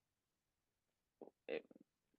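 Near silence in a speaker's pause, broken about a second and a half in by a couple of faint, brief mouth or voice sounds from the woman before she speaks again.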